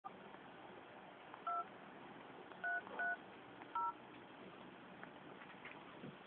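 Telephone touch-tone dialing: four short two-tone keypad beeps, the digits 2, 3, 3, 0, over faint phone-line hiss. The first comes about a second and a half in, two follow close together just under three seconds in, and the last comes near four seconds.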